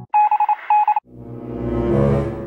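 Electronic phone-style beeping in two quick groups of beeps, followed by a swelling whoosh that rises to a peak and then fades.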